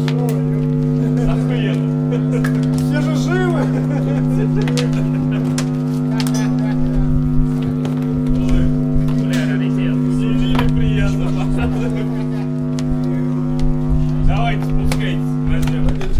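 A steady, loud low drone of held amplified guitar and bass notes left ringing through the amps, one unchanging chord with many overtones. Voices call out over it, and low knocks and thumps join in from about seven seconds in.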